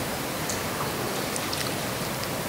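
Steady, even background hiss of a hall's room tone through the sound system, with no distinct event.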